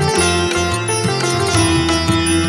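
Instrumental interlude of a Bengali devotional bhajan: a melody of held notes over changing bass notes and a steady beat, with no singing.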